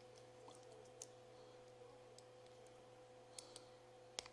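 Near silence with a few faint clicks, one about a second in and two close together later, from jumper-wire connectors being pushed onto the header pins of a small TFT display module, over a faint steady hum.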